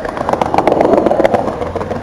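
Skateboard wheels rolling over a concrete sidewalk: a steady rumble with small clicks running through it.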